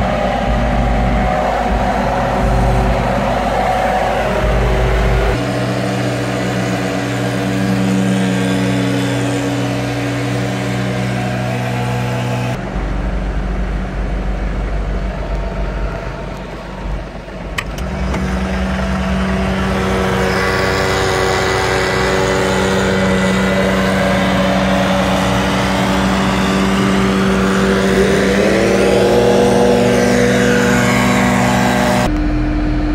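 Backpack leaf blowers and a tractor engine running together: a steady mix of engine tones that shifts pitch several times, dips briefly about two-thirds of the way through, and revs up near the end.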